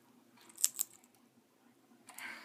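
Australian ringneck parrot cracking seeds in its beak: two or three short, sharp cracks close together about half a second in.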